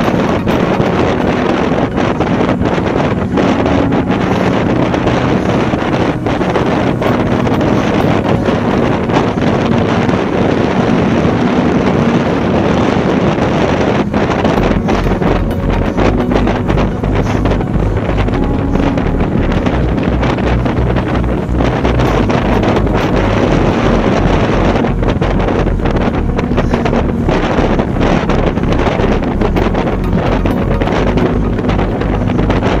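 Wind buffeting the microphone of a handlebar-mounted camera on a road bike at about 37 km/h: a loud, steady rush. From about halfway through, a fast, even low flutter sits underneath it.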